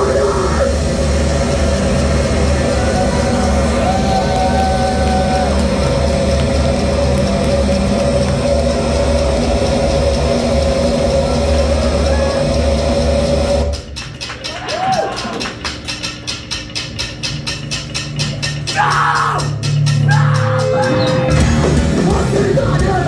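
Heavy rock band playing live and loud, with violin, keyboards, guitar and drums in the mix. About 14 s in the full band drops out to a quieter passage with an even ticking pulse, and the band crashes back in about 20 s in.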